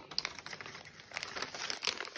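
Plastic and cellophane food packets crinkling as they are handled, a busy run of sharp crackles.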